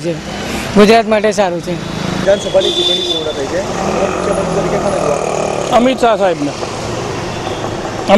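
Road traffic running steadily on a city street, with short stretches of a man's speech about a second in and again about six seconds in.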